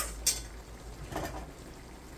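Two sharp clicks right at the start, the sounds of tasting sauce off a spoon, then a soft noise about a second in, over the faint simmer of a pan of fish stew.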